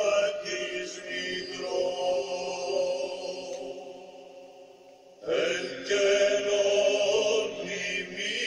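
Slow sung chant in several voices, holding long notes; the phrase dies away about four seconds in and a new one enters strongly a little after five seconds.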